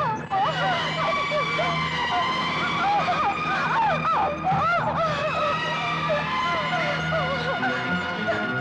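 A woman in labour crying out and moaning in pain, her voice wavering up and down, over a steady held tone.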